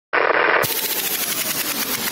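Rapid machine-gun fire sound effect in a produced radio intro. It starts abruptly out of silence, sounds muffled for the first half second, then turns brighter.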